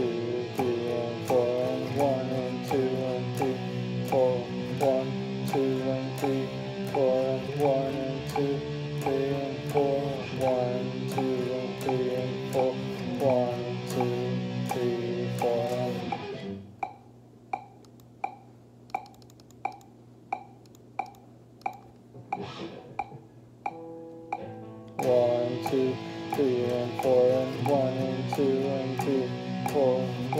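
Les Paul Custom-style electric guitar playing a quick run of picked notes, some bent. About 17 seconds in the playing stops, leaving a held low note and a steady tick about every 0.6 seconds. The playing starts again about eight seconds later.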